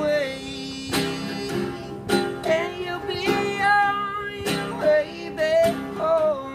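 Live guitar and voice from a solo singer-guitarist: the guitar is hit or strummed hard about once a second over a steady chord, while the voice holds and bends long sung notes, the first word "away" drawn out at the start.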